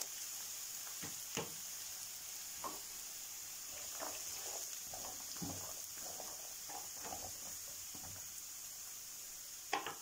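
Diced carrots and onions sizzling in oil in a frying pan, a steady hiss with a few short, light knocks of a utensil against the pan.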